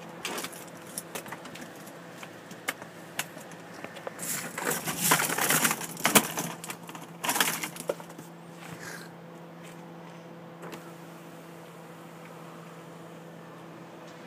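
Clatter of small hard plastic drainage pieces rattling and tumbling inside a car, with scattered clicks early on and the loudest rattling about four to six seconds in and again around seven seconds. A steady low hum runs underneath.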